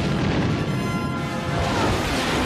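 Orchestral film score over a deep, rumbling spaceship fly-by from a space-battle scene.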